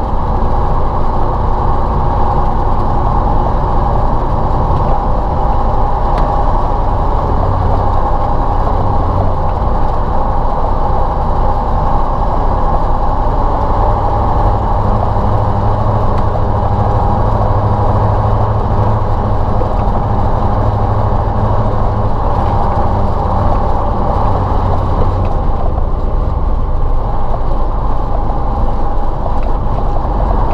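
Ural logging truck's YaMZ-238 V8 diesel running steadily while the truck drives, with the mechanical whine and clatter of its gearbox and drivetrain. The low engine note grows heavier for several seconds in the middle.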